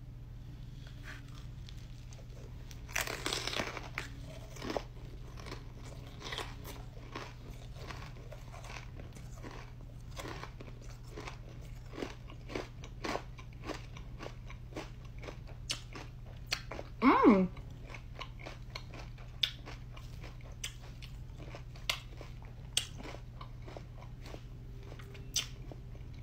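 A bite into a chamoy pickle wrapped in fruit roll-up and stuffed with Takis: a loud crunch about three seconds in, then a long stretch of crunchy chewing with many small crackles. There is a short vocal sound about seventeen seconds in.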